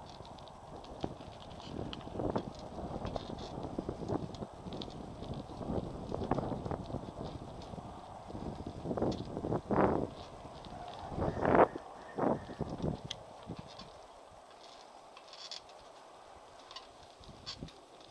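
Bicycle riding over an uneven lane: tyre rumble with irregular knocks and rattles from the bike and its mounted camera, dying down near the end as the bike slows to a stop.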